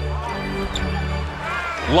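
Basketball arena ambience: crowd noise under bass-heavy music from the arena's sound system during live play. A commentator's voice comes in near the end.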